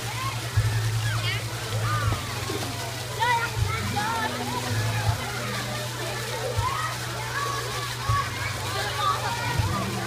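Pool water splashing and sloshing as swimmers move about, with children's voices calling and chattering throughout.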